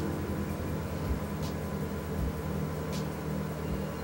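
Steady low hum with a faint high tone, and two faint ticks about a second and a half apart.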